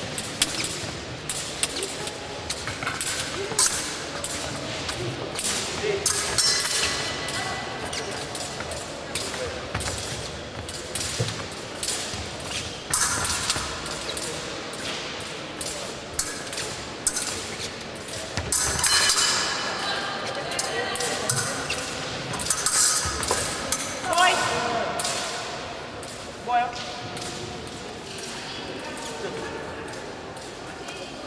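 A fencing bout in a large echoing hall: repeated quick footsteps stamping on the piste and short sharp blade contacts. Voices can be heard in the background.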